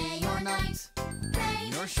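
Children's sing-along song: voices singing over a bright instrumental backing with a regular beat, with a quick glide in pitch near the end.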